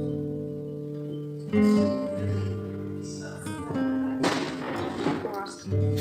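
Acoustic guitar music with plucked notes ringing on, a fresh phrase starting about a second and a half in. A short burst of noise comes about four seconds in.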